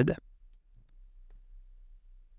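Near silence with a few faint, separate clicks in the first second and a half, after the tail of a spoken word.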